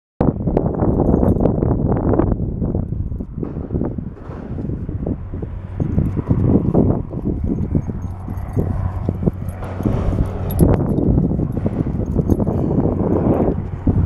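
Handling and walking noise on a handheld phone microphone outdoors: a continuous low rumble with irregular knocks and rustles from the walker's movement and steps.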